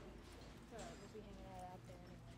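Faint, distant voices over a low, steady hum, with a small click about a second in.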